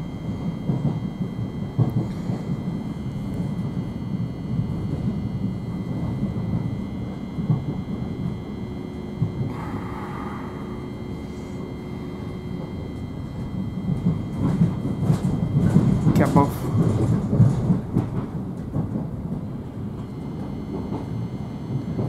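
Inside a moving Thameslink Class 700 electric train: steady low rumble of the wheels on the track, with thin, steady high tones above it. The rumble grows louder and rougher for a few seconds past the middle, with some clicks.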